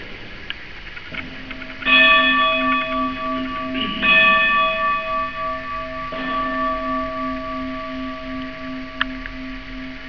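Bell rung at the elevation of the host at Mass: a deep ringing tone sets in about a second in, then three louder strikes about two seconds apart, each ringing on with a slowly pulsing low note.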